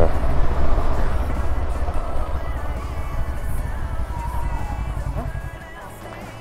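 Low rumble of a motorcycle under way, engine and wind noise on the bike-mounted microphone, fading out gradually, with faint music underneath.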